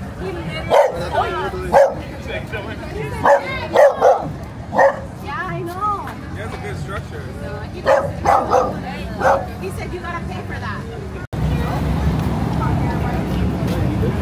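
Small dachshund-type dog barking in short, sharp yaps: about half a dozen in the first five seconds and a few more around eight to nine seconds in. A little past the three-quarter mark the sound cuts off suddenly and gives way to steady street noise.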